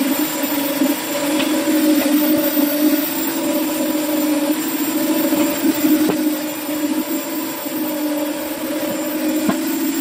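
Electric concrete needle vibrator running steadily, its flexible-shaft poker down inside steel column formwork, compacting freshly poured concrete. A steady, even-pitched motor hum with a few faint knocks.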